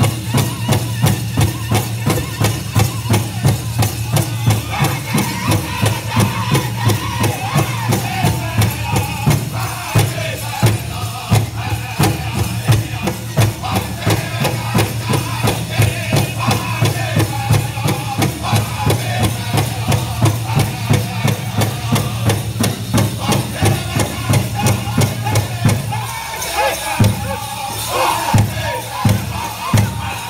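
A powwow drum group singing a men's traditional song over a big drum struck in a steady, even beat, about two to three beats a second. Near the end the steady beat gives way to louder, more widely spaced strikes.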